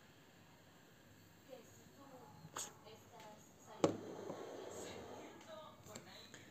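A person drawing on a Voopoo Drag Nano 2 pod vape with its airflow vent set to minimum: quiet at first with a faint click, then a soft breathy exhale of vapour lasting about two seconds, starting just past the middle.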